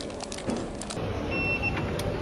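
Plastic bags crinkling as they are handled, then a single short high beep from a station ticket gate's card reader over a low rumble of station noise.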